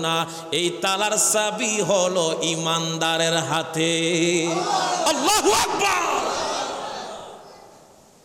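A man chanting melodically into a microphone over a PA system, holding long steady notes. About five seconds in the chant breaks into a wavering, echoing note that fades away by about seven and a half seconds.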